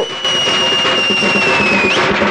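Edited transition sound effect: one long high tone over a hiss, sinking slightly and flicking upward at the end.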